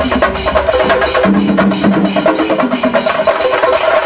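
Chendamelam: a group of chenda drummers beating their cylindrical wooden drums with sticks in a fast, dense, loud rhythm.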